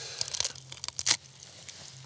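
Dry bark being pried and broken off a dead spruce trunk killed by bark beetles: a run of small cracks and crackles with one sharper crack just over a second in.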